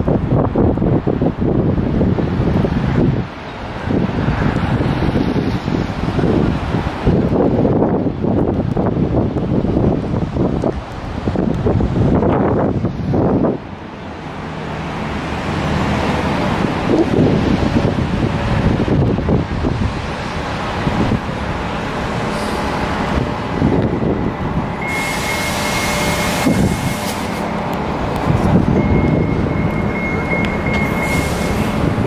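City street traffic with wind gusting on the microphone, rising and falling in irregular surges. A thin, high, steady whine sounds twice in the last few seconds.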